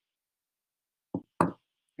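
A silent pause, then two short knocks about a quarter second apart, just past the middle.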